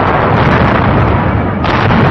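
Film sound effect of a large explosion as a fortress tower blows up: a long, loud blast, with a second burst near the end.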